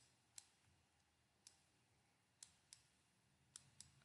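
Near silence broken by about seven faint, irregular clicks of a stylus writing on a drawing tablet.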